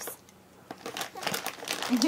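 Plastic snack bag of corn puffs crinkling as a baby grabs and handles it, in a quick run of crackles that begins less than a second in. It sounds crinkly and noisy.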